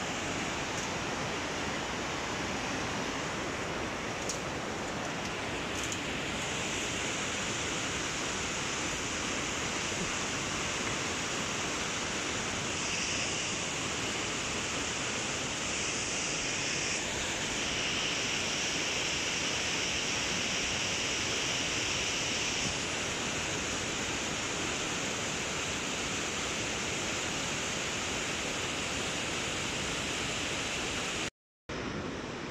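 Steady rushing of river water running over the rapids below, an even hiss with no break.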